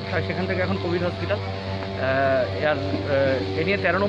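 A man speaking in Bengali over a steady low hum, with a drawn-out, wavering call about two seconds in.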